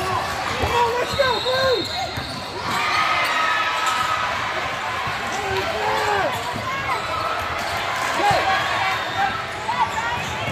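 Basketball game on a hardwood gym floor: sneakers squeak in many short chirps as players run, the ball knocks on the floor, and voices carry around the gym.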